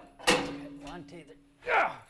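Manual sheet-metal bending brake worked on a metal road sign: one sharp metallic clank about a quarter of a second in.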